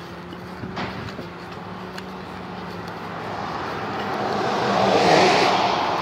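A car passing by on the road, its tyre and engine noise swelling slowly to a peak about five seconds in, then easing off.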